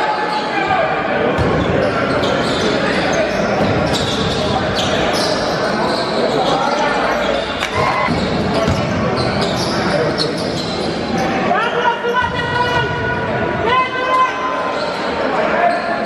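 Basketball game in an echoing gym: the ball bouncing on the court amid constant crowd chatter, with two loud, drawn-out shouts from the crowd near the end.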